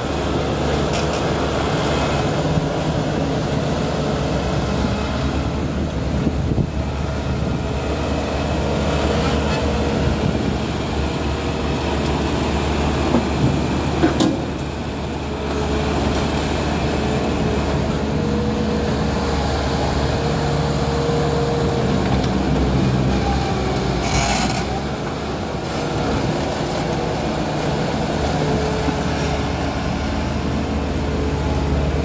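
Bobcat skid-steer loader's diesel engine running steadily under load as it digs, lifts its bucket and drives. Two short sharp knocks stand out, one about halfway through and one about three-quarters in.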